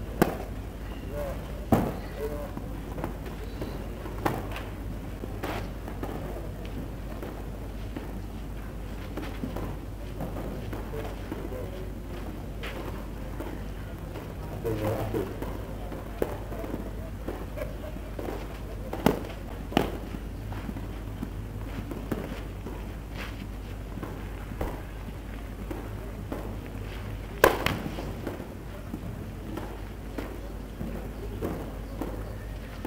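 Tennis ball struck and bounced on a clay court: a handful of sharp pops scattered through, the loudest near the end, over a steady low hum and faint spectator chatter.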